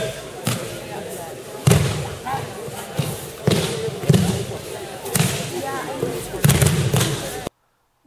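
Irregular thuds of competitors' feet and bodies on tatami mats during an aikido randori bout, about one or two a second, echoing in a large sports hall, with voices calling out in between.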